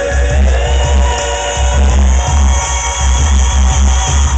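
Amplified live band playing a dance-style remix of a country-pop song, heard from the audience, with a heavy pulsing bass under drums and guitar.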